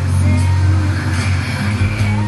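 Trailer soundtrack played from a TV and picked up by a phone: a loud, steady low rumble under music, with no speech.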